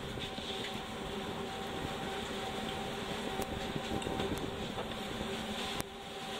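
Steady hum of kitchen machinery, with a faint even tone over a noisy rush, and a few light clicks and knocks from food being handled.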